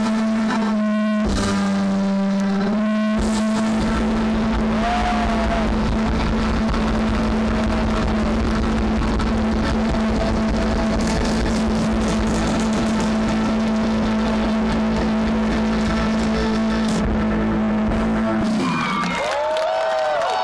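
Live rock band through a loud PA ending a song: a few chord hits, then one long held chord that rings steadily and stops near the end. Whistles from the crowd follow.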